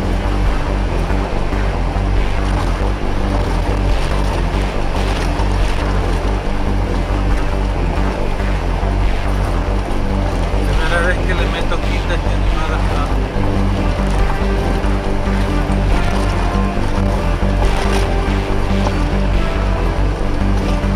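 Car driving on a gravel road, heard from inside the cabin: a steady rumble of tyres on gravel and engine noise, with music mixed in.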